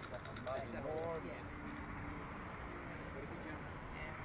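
Faint voices of people talking, mostly in the first half, over a steady low background rumble.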